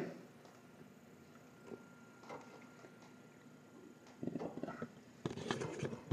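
Mostly near silence, broken by a couple of faint ticks, then soft irregular rustling and knocking near the end from hands handling the heater or the camera.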